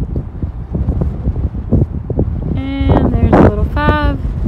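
Wind buffeting the microphone in a rough, steady rumble. Two short voice sounds come near the end, with a breathy burst between them.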